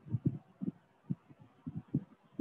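A quick, irregular series of short, low, muffled thumps, several a second.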